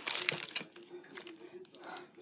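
Plastic wrapping on packs of frozen meat crinkling as a hand handles them, loudest in the first half-second with a shorter rustle near the end.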